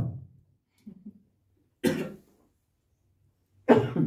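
A man coughs once, short and sharp, into a handheld microphone about halfway through, then makes another throat sound near the end.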